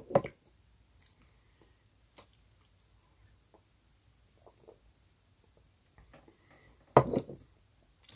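A person drinking soda from a glass: a short mouth sound at the start, then a few faint clicks and soft swallowing sounds, and a louder mouth noise about seven seconds in.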